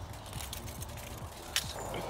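Faint metallic clicks of long-nosed unhooking forceps working a lure's hooks free from a pike's mouth in a landing net, with one sharper click about one and a half seconds in.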